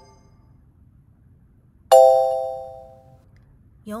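A single electronic chime sound effect about two seconds in, a bright bell-like ding that fades away over about a second.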